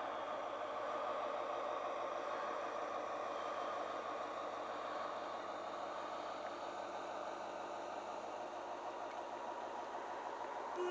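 Small boat motor running steadily, heard from aboard the boat.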